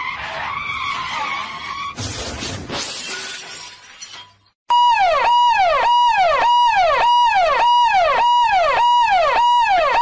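A few seconds of noisy clatter, then a loud electronic siren-like tone that holds a high note and drops, repeating about twice a second, which stops abruptly.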